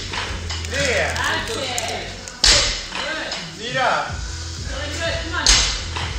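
A loaded barbell with bumper plates dropped onto rubber gym flooring twice, about three seconds apart, one drop after each power snatch rep.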